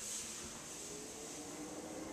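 Panasonic ceiling exhaust fan (the fan side of a fan-heater combo) running: a faint, steady airy hiss with a low hum. It is a quiet fan, reckoned at about one sone.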